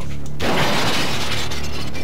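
A sudden crash about half a second in, its noise fading away over a second or so, over sustained music.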